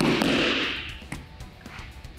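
A person thrown down onto tatami mats lands with a sudden thud and a short rustling spread of noise that fades within about half a second, over background music.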